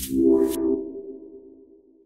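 Electronic outro sting: a sustained synth chord enters with a falling whoosh, then slowly fades out.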